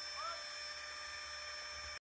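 Flextail Tiny Pump 2, a small battery-powered air pump, running steadily in a sleeping pad's valve: a faint, even whine and hiss, the noise its user calls annoying.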